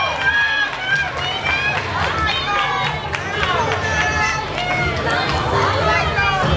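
Crowd of children and adults, many voices talking and calling out over one another at once.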